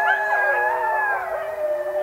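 Several wolves howling together: long, drawn-out notes at different pitches overlap, some held steady and others slowly wavering and gliding.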